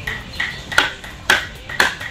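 A wooden mallet driving a carving chisel into wood: four sharp strikes about half a second apart, each with a brief ring.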